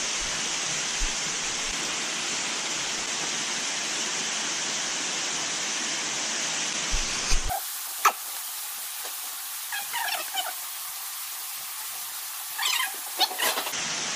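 A steady rushing hiss that stops abruptly about halfway through. The rest is quieter, with one sharp click and several short, high squeaks.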